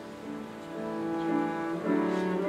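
Double bass played with the bow, a slow melody of held notes with piano accompaniment, swelling louder near the end.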